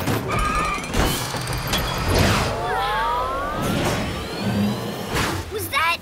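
Cartoon sound effects of a big runaway tracked machine rumbling along, with clanks and crashes every second or so and some sparking zaps, over background music.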